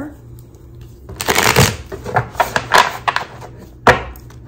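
A tarot deck shuffled by hand: a quick run of papery card flicks for about two seconds, then one sharp tap as the deck is squared against a wooden table near the end.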